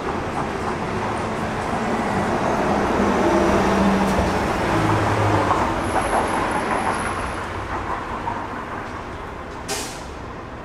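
A heavy vehicle driving past on the street: engine and road noise build over the first few seconds, peak around the middle with a low engine hum, then fade away. A short sharp click just before the end.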